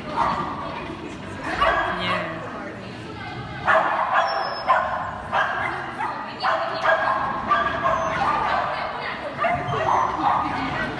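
A dog yapping repeatedly as it runs an agility course, the barks coming about twice a second from midway on.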